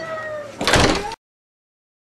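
A glass-paneled front door swinging shut and closing with a single loud bang a little over half a second in.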